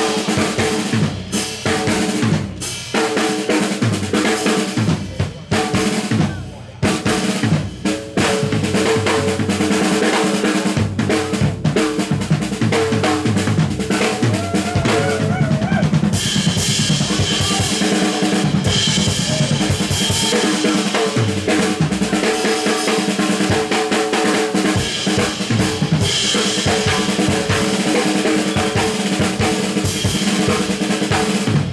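A drum kit played live as a solo, with bass drum, snare, toms and cymbals. There are a few brief pauses in the first eight seconds, then dense, continuous playing to the end.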